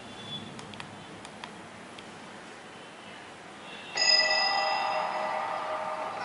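A few faint clicks, then about four seconds in a film trailer's soundtrack starts playing from the tablet's small built-in speaker: a sudden, sustained musical chord that holds steady.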